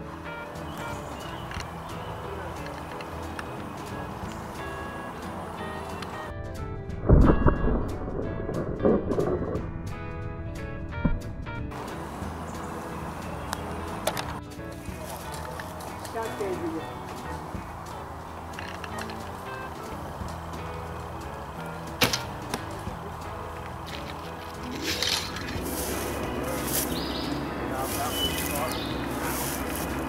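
Sharp knocks of bow shots and arrows striking a 3D foam target in woodland, over a steady outdoor background. Stretches of background music come and go, and a heavy low thump about 7 seconds in is the loudest sound.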